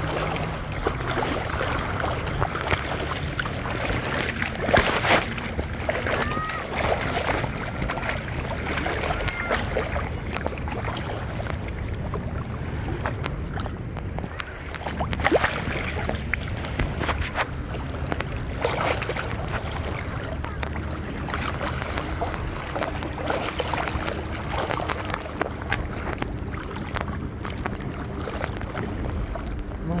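Sea water splashing and sloshing, with a steady low hum from a boat motor and a few louder splashes. There is wind on the microphone.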